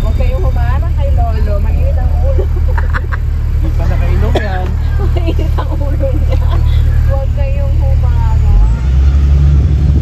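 Steady engine and road rumble of an open-top double-decker tour bus heard from its upper deck, with people's voices talking over it. About eight and a half seconds in the rumble deepens and grows louder.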